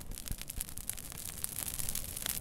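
Crackling noise: dense, irregular clicks over a faint hiss, with no music.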